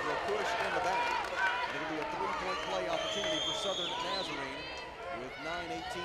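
Basketball gym ambience after a made layup and foul: overlapping voices of players and crowd, with sneakers squeaking on the hardwood court.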